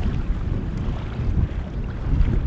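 Wind buffeting the microphone in a loud, uneven low rumble, over the rush of a fast river current.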